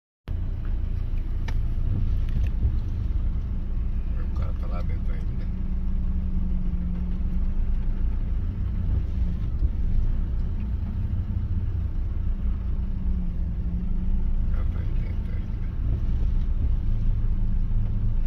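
A vehicle's engine idling while stopped, heard from inside its cab as a steady low rumble, with faint voices in the background.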